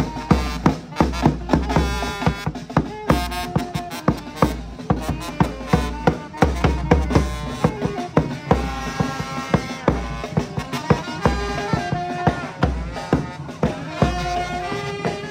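Live brass band playing a tune: saxophone, trumpet and trombone over snare and bass drum keeping a steady beat of about two strokes a second.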